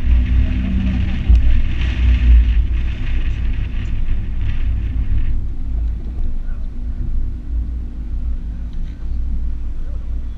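Honda CRX's four-cylinder engine running at low revs as the car rolls slowly, with heavy wind rumble on the microphone. A hiss heard over it stops abruptly about five seconds in.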